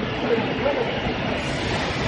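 Steady mechanical running noise of a PS foam plate and lunch-box production line, with background voices.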